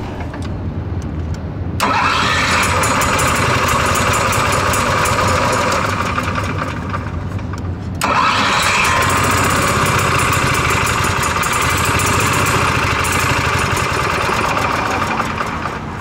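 Onan QG 4000 EVAP RV generator engine starting up about two seconds in and running loudly for several seconds, then dying away near the end. It will not stay running, and the controller flags a fault, code 36.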